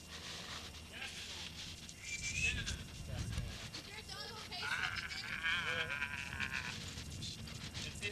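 An animal bleating: a short call about two seconds in, then a long, wavering bleat about halfway through.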